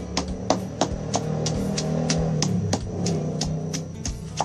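Stone pestle pounding chilies and garlic in a stone mortar, striking about three times a second to make a spicy dipping sauce. Music plays underneath.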